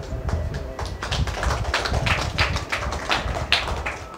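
A rapid, irregular run of taps and knocks, densest through the middle and latter part.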